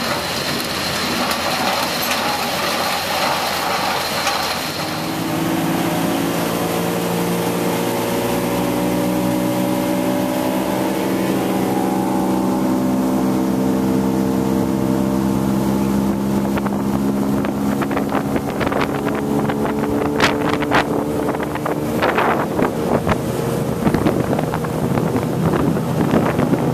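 For the first few seconds, machinery running at a sugar-cane loader beside a cane punt. Then the outboard motor of a small open boat running steadily at speed across open water, with wind buffeting the microphone in bursts during the second half.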